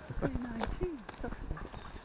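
Footsteps crunching on a leaf-strewn dirt woodland path, a string of short, soft knocks, with brief murmured speech in the first second.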